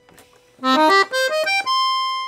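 Serenelli Acarion piano accordion's treble reeds played on the clarinet register. A quick run of single notes, stepping up and down, starts about half a second in and ends on a held note.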